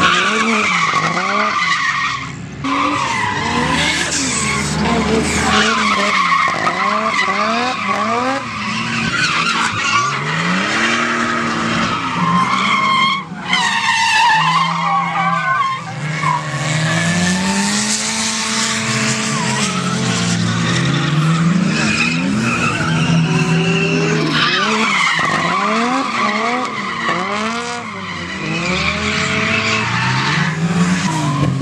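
Drift cars sliding sideways through a corner: engines revving up and down over and over as the drivers work the throttle, with tyres squealing and skidding. There are short breaks in the sound about two and a half seconds in and again near the middle.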